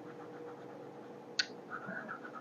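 Faint scratching of colored pencils on paper during coloring, in quick repeated strokes, with one sharper scratch about one and a half seconds in.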